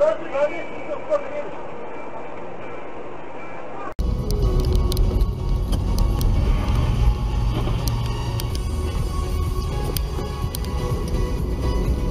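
Dashcam audio of a car driving: a steady low rumble of engine and road noise heard from inside the cabin, with scattered light clicks. It becomes suddenly louder and deeper about four seconds in.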